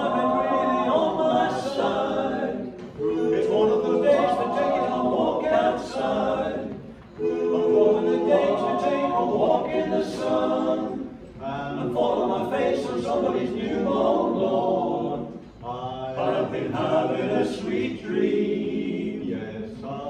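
Male a cappella group of five voices singing together in harmony, in phrases of about four seconds with short breaks between them.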